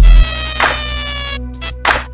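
Instrumental hip-hop beat: a heavy kick drum, then a snare hit, under a synth tone that slides slowly down in pitch over about a second and a half.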